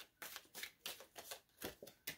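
A deck of oracle cards being shuffled by hand: a run of short, faint card flicks, several a second.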